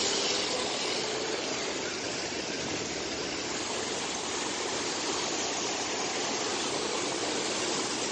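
Steady rush of muddy floodwater pouring through a channel in spate after heavy rain.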